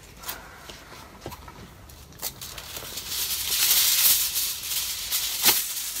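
Aluminium foil being pulled off its roll and torn from the box: a crinkling rustle that builds after a couple of seconds and is loudest in the middle, with a sharp click near the end.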